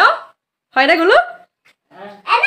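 A woman's voice: the end of a spoken phrase, then one short, high vocal sound whose pitch rises, like a playful squeal.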